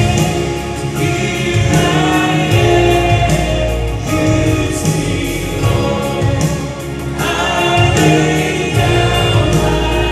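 Live gospel worship music: a man sings into a handheld microphone, with other voices and instrumental accompaniment that includes a steady bass.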